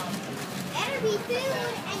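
Background chatter of people talking, softer than close-up speech, with a steady hum of crowd noise.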